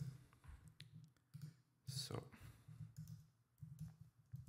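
Faint computer mouse clicks, a few scattered through, as the software is operated, with a brief low voice sound about two seconds in.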